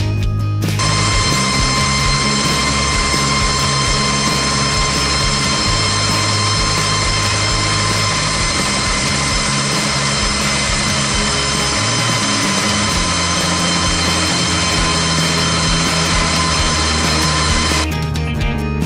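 Rock music over the steady, high whine of a Wachs DW208 diamond wire saw cutting through a water pipe. The machine sound comes in under a second in and cuts off just before the end.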